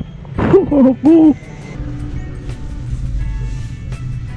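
Two short hooting vocal calls, each rising and falling in pitch, about half a second and a second in, followed by a low steady rumble.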